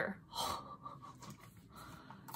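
A woman breathing out softly between sentences, one faint breath about half a second in and another near the end.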